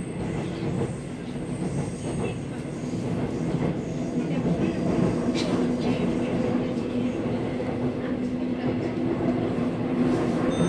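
Seoul Metro Line 2 train, heard from inside the car while running between stations: a continuous rumble of wheels on rail under a steady hum from its Mitsubishi-based IGBT VVVF traction drive, growing slightly louder.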